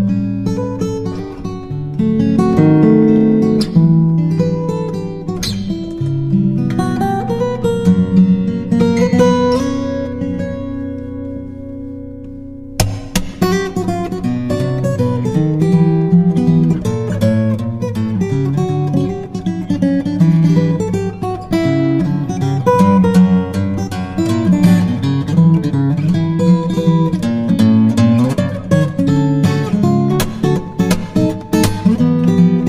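Background music on acoustic guitar, plucked and strummed. About ten seconds in, a held chord dies away, then the playing starts again abruptly and runs on busily.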